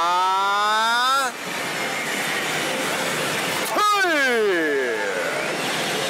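A man's drawn-out vocal "tooo" sounds, one held with a rising pitch for about the first second and another sliding sharply downward about four seconds in. They sit over the steady background din of a pachislot hall.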